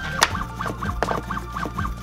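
Motors of a 3D-printed robotic chopper whining in quick repeated moves, about six a second, each a short rise, hold and fall in pitch, as the knife runs a chopping routine on a carrot on a wooden board. A sharp knock about a quarter second in. Background music underneath.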